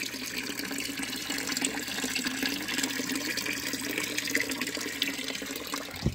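Steady running water of a small backyard fish pond, with water flowing or trickling continuously.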